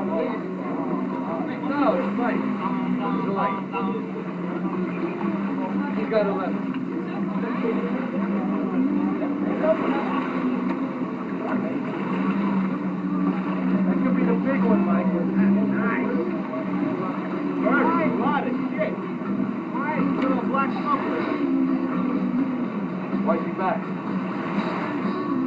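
A motorboat engine running steadily with a low hum, with indistinct voices talking over it.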